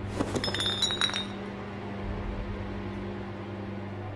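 A brief clatter of sharp clinking, ringing impacts in the first second or so as metal altar vessels are knocked over, over a steady low drone of film score.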